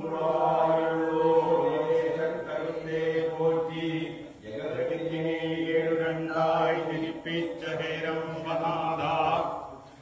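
A group of male voices chanting a ritual song together, of the kind sung while circling the lamp in Poorakkali, in two long held phrases with a short break about halfway.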